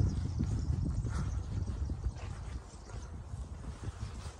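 Footsteps on a paved cemetery path, uneven light steps, with wind rumbling on the microphone; the sound fades toward the end.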